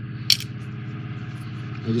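Electronic toy launch pad playing its spacecraft sound effect: a steady, low, engine-like hum. One sharp click comes about a third of a second in.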